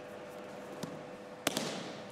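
Aikido ukes thrown onto tatami mats: a light knock a little under a second in, then one loud, sharp slap of a body landing in a breakfall about a second and a half in, dying away quickly.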